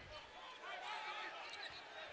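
Faint basketball-arena ambience during live play: a low murmur of crowd and players' voices, with a basketball being dribbled on the hardwood court.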